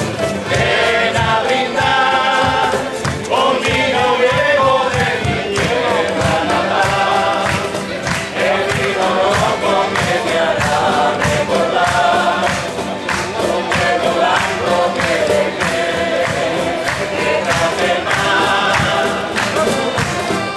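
A Canarian parranda folk group playing live, with rhythmic strummed guitars and other plucked string instruments under several voices singing together.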